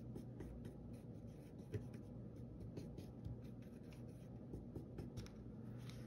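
Faint, irregular scraping and light ticking of a paintbrush stirring acrylic paint and fluid medium in a plastic palette well.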